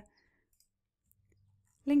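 A few faint, scattered clicks of computer keyboard keys over near silence.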